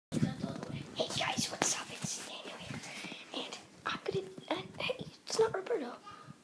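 A boy whispering close to the microphone, with a few softly voiced words in the second half.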